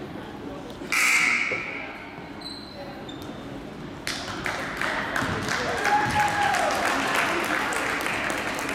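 Gymnasium basketball game sounds: voices from players and spectators, with a sudden loud burst about a second in that fades away. From about four seconds in come many sharp knocks of the ball bouncing and footfalls, with squeaks, as play runs up the court.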